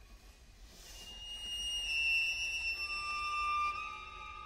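String trio of violin, viola and cello playing contemporary classical music. After a hushed start, a high held bowed note swells in about a second in. A second, lower held note joins past the middle.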